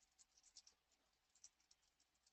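Faint typing on a computer keyboard: quick keystrokes in short, irregular runs.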